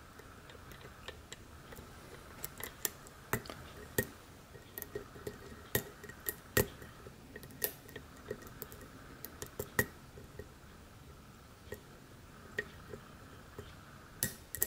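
Steel hook pick clicking and scraping against the pins inside a brass pin-tumbler lock cylinder during single-pin picking under tension: faint, irregular small clicks with a few sharper ones. The pins are bound up and being forced, giving no useful feedback.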